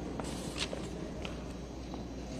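Footsteps of a person walking past close by, a few separate soft steps over a steady low room hum.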